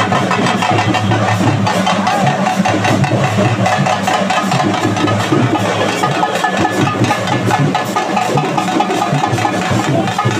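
Procession music: drums beating along with other instruments, dense and continuous. A vehicle engine runs underneath.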